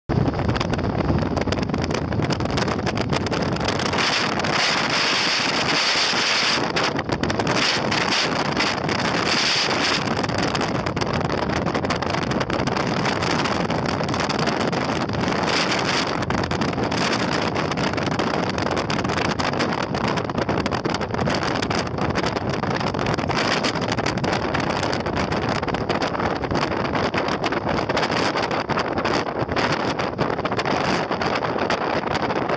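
Steady road and wind noise from a moving vehicle, with wind buffeting the microphone and surging louder about four and nine seconds in.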